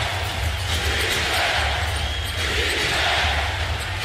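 Steady crowd noise from a full basketball arena during live play.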